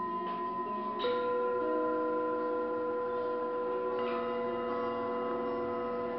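Tibetan singing bowls ringing in long, overlapping sustained tones. One bowl is struck about a second in, adding a clear new tone, and another is struck lightly near four seconds in.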